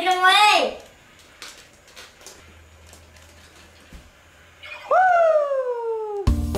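A child's voice in a short excited cry, then a few seconds of faint room noise with light clicks. About five seconds in comes one long call that slides steadily down in pitch.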